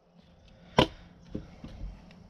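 A single hammer blow on a nail in a wooden board about a second in, followed by a few faint knocks.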